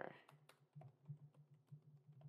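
Faint computer keyboard typing: a quick, irregular run of key clicks.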